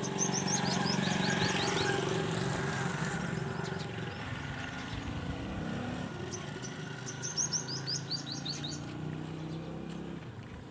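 A bird chirping in two runs of quick, high, repeated calls, the first at the start and the second about seven seconds in, over a steady low drone that is louder for the first few seconds.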